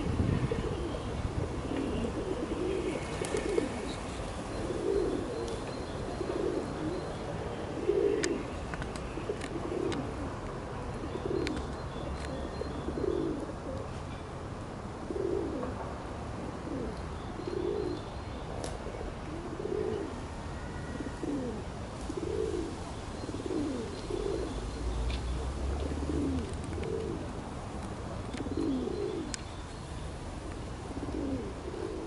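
A pigeon cooing over and over, a low coo every second or so, with faint chirps of small birds and a brief low rumble about three-quarters of the way through.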